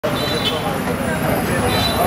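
Street traffic noise running steadily, with people's voices chattering over it.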